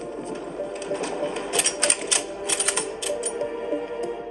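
Background music with sustained notes, overlaid by a rapid scatter of sharp pistol shots at an indoor firing range, densest from about one and a half to three seconds in. Heard through a television speaker.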